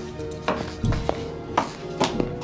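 Quick footsteps of shoes on a hard floor, a sharp step about every half second, over soft background music with long held notes.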